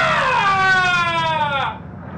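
A man's drawn-out falsetto wail like a siren: one long held note that slides slowly down in pitch and stops near the end.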